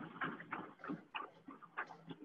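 Faint, uneven footfalls of a runner sprinting on a TrueForm curved, non-motorized slat treadmill, a few strikes a second, heard through thin video-call audio.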